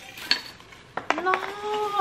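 Broken pieces of a pumpkin-shaped jar clinking and rattling inside honeycomb kraft-paper wrapping as the bundle is handled. There is one sharp clink early, then a cluster of several clinks about a second in: the jar arrived broken in shipping.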